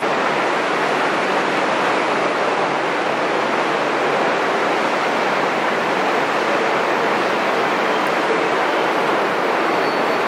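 Steady, even rushing noise in a large train station hall, with no rhythm or tone, starting suddenly at a cut and holding one level.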